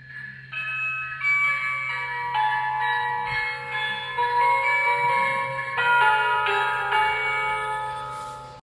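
A children's Christmas sound book's electronic sound module playing a Christmas melody in bell-like tones through its small speaker, with a low steady hum underneath. The tune starts about half a second in, its notes changing about twice a second.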